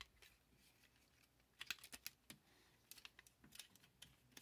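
Faint plastic clicks and ticks from the joints and parts of a Transformers Kingdom Rhinox action figure being worked by hand during transformation, coming in a few short clusters from about one and a half seconds in.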